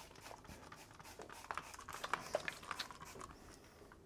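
Cloth wiping cleaner across a glass lightboard, making faint, irregular short squeaks and rubbing strokes, loudest around the middle.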